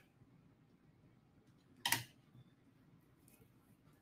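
Quiet kitchen room tone with one short clack about halfway through, from kitchen utensils being handled.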